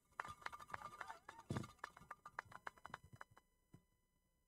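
Faint scattered hand-clapping from a small crowd, several claps a second, thinning out after about three seconds.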